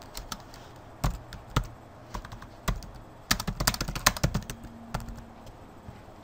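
Typing on a computer keyboard: irregular key clicks, with a quicker run of keystrokes in the middle.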